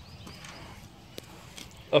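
Quiet outdoor background with a single faint click a little past a second in, then a man's voice starts near the end.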